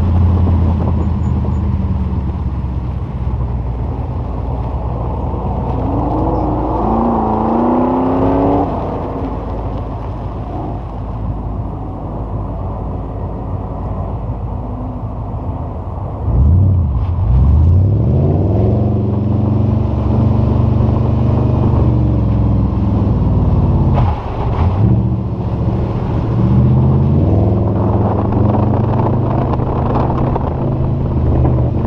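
Audi S4's engine pulling hard, driven on lake ice, its revs rising and falling with throttle and gear changes. The revs climb about a quarter of the way in. About halfway there is a sudden drop followed by a louder surge, and there is another brief dip later on.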